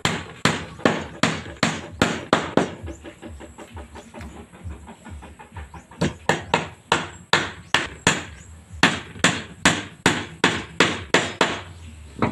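Hammer driving nails into a plywood sheet on a wooden bed frame: steady blows about three a second, lighter taps around the middle, then heavy blows again that stop just before the end.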